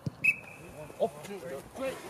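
A single short blast on a coach's whistle about a quarter second in: one steady high note lasting under a second, the signal to start a lineout lifting race. Boys' voices shout as the jumpers are lifted.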